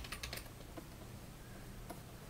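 Faint, light clicks from a digital drawing setup at a computer: a quick run of clicks in the first half second, then a couple of single clicks.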